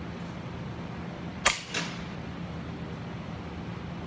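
A single sharp crack, followed about a third of a second later by a second, weaker crack, over a steady low hum.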